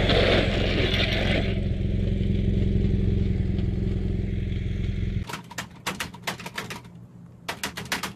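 Motorcycle engine running steadily, with wind noise on the helmet microphone in the first second or so. The engine cuts off abruptly about five seconds in and is replaced by fast, hard clacking of a computer keyboard being typed on, which pauses briefly before going on.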